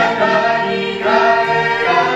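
Two women and two men singing a hymn together through microphones, their voices blended and holding long notes.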